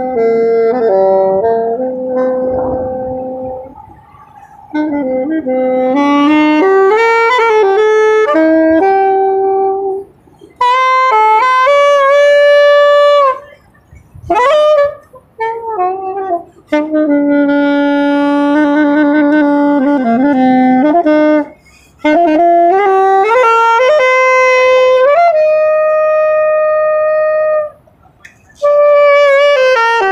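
Solo saxophone playing a slow, unaccompanied melody in phrases of a few seconds, split by short pauses, with long held notes and a quick upward slide in pitch about halfway through.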